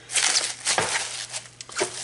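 Plastic cling wrap crinkling as hands press and smooth it over a rack of seasoned ribs in a plastic tub. The rustle is loudest in the first second, then softer, with a few light clicks.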